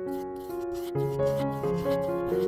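A large flat brush scrubbing acrylic paint across a stretched canvas in quick repeated back-and-forth strokes, over soft background music of held notes.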